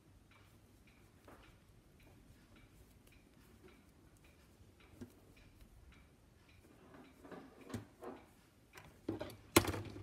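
Faint regular ticking, about three ticks a second, under quiet handling of knitting needles and wool yarn. Toward the end, louder clicks and rustles as the needles and work are moved, the sharpest click just before the end.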